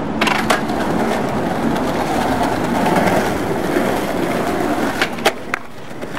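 Skateboard wheels rolling on concrete pavement in a steady rumble, with sharp clacks of the board just after the start and two more about five seconds in.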